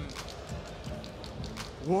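A lull in the commentary: low, even arena background noise with faint music under it.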